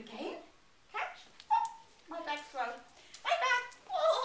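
A dog giving several short, high-pitched barks and yelps with brief pauses between them.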